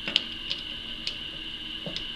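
Light metal clicks as a small screw is fitted back into a digital caliper's slider, about four faint, scattered ticks.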